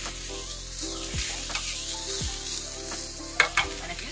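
Sliced vegetables sizzling in hot oil in a frying pan on a gas burner while a metal spoon stirs them, with a few sharp clicks of the spoon against the pan about three and a half seconds in.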